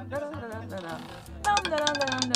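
Talking over background music, with a run of quick sharp clicks starting about three quarters of the way in.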